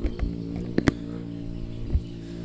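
Sharp clicks and dull knocks from hands-on work at a Honda Supra 125's engine during an ignition spark check, two clicks close together a little under a second in, over a steady low hum.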